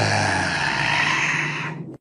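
Anime sound effect: a loud rushing noise that starts suddenly, holds steady, then fades away near the end and cuts off.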